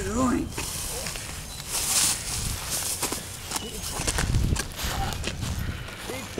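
A man groaning and gasping in short wordless bursts, with scuffling footsteps and clicks on dry leaves and pavement, and a hissy breathy swell about two seconds in.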